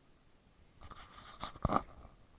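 About a second of close crunching and rustling with a couple of sharp knocks near the end, from the walker carrying the camera.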